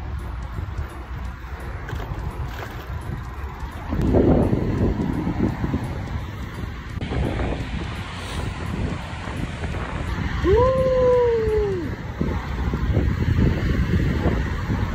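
Wind buffeting the microphone while riding a bicycle, over a steady low rumble. About ten seconds in, a short tone rises and then falls.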